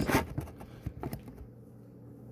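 Close handling noise: hands rustling and scraping right by the phone's microphone, with a burst at the start, then a few small clicks and scrapes that die away into quiet near the end.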